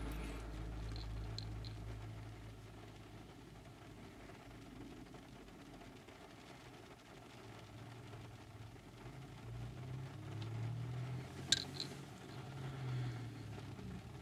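Faint low rumble inside a car cabin that swells and fades, with a single sharp click about eleven and a half seconds in.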